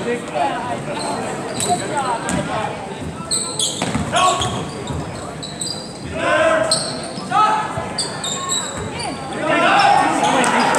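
Live basketball play in a school gym: a basketball bouncing on the hardwood court, sneakers squeaking, and players and spectators calling out now and then, all echoing in the hall.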